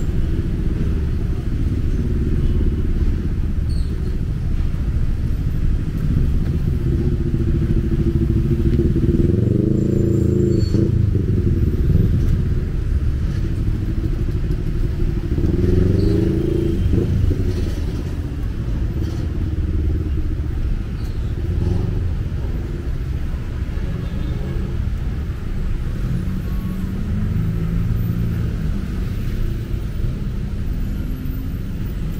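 Roadway traffic rumbling steadily, with the engines of passing vehicles rising and falling in pitch, loudest about ten and sixteen seconds in.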